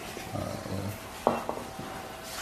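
A man's low murmured "uh", then two light clicks about a second and a quarter in, a quarter of a second apart.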